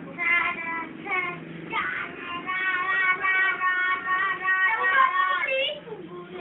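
A high-pitched voice singing, with short phrases at first and then long held notes through most of the second half.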